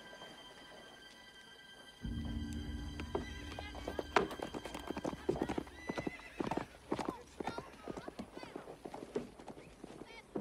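Horse hooves clip-clopping irregularly, with a horse whinnying, over a low sustained film-score drone that swells in about two seconds in.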